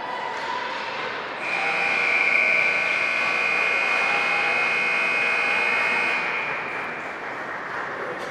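Ice rink scoreboard horn sounding one long steady tone for about five seconds, starting more than a second in, over the hum of the rink.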